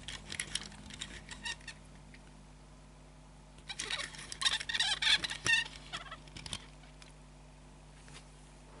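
Two 1:64 diecast Citroën models, a C4 and a DS4, turned and slid by hand on a tabletop: light clicks, scrapes and small squeaks of their little wheels and bodies on the surface. It comes in two bursts, a short one at the start and a busier one in the middle.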